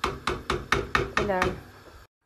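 A quick, even run of sharp knocks in the kitchen, about five a second, of the kind made by chopping on a cutting board.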